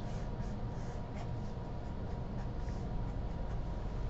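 A pen scratching on paper in short, scattered strokes as a box and asterisks are drawn around a written answer, over a faint steady hum.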